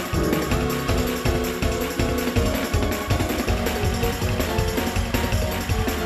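Live gospel band of organ, electronic keyboard and drum kit playing an up-tempo number with a fast, steady beat.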